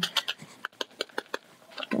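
Thin clear plastic orchid cup clicking and crackling as it is tapped and squeezed by hand, settling granules of ЦИОН substrate down among the roots. A quick run of about a dozen sharp clicks that thins out about halfway through.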